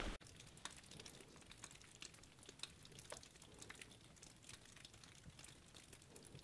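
Near silence, broken only by faint, scattered ticks and crackles.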